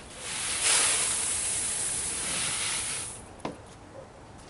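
Rice grains poured from a tray into a plywood feed hopper: a steady, grainy hiss lasting about three seconds, then a single sharp click.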